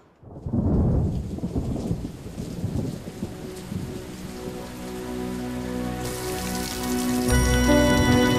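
A sudden roll of thunder, loudest about a second in and fading, over heavy rain pouring down and splashing into puddles. Music swells in over the rain in the second half.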